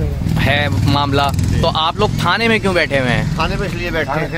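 A man speaking Hindi close to the microphone, over a steady low rumble of background noise.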